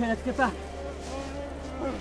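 A person's voice making short, strained, wordless sounds, strongest in the first half second and fainter again later, over a steady low hum.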